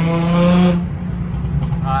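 Hyundai Genesis Coupe 3.8's V6 heard from inside the cabin, pulling hard under acceleration with its pitch slowly climbing, then backing off about a second in to a lower steady drone.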